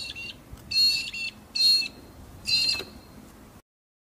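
Brolgas calling: four loud, high calls over a faint outdoor background, the last ending about three seconds in. The sound then cuts off suddenly.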